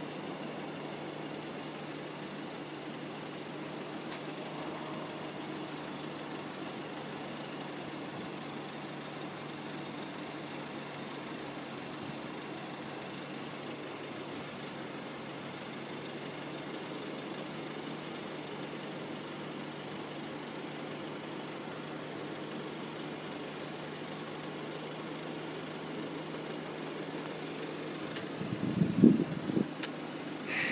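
Steady hum of cars and a pickup truck idling in a queue at a railroad crossing, with a constant low engine tone. A few loud thumps near the end.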